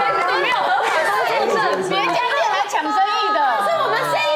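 Several people talking over one another, lively overlapping chatter.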